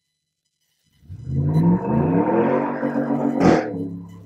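A loud vehicle engine starts up about a second in, rising in pitch as it accelerates and then running steadily. A single sharp crack comes near the end. The sound is sudden and loud enough to startle.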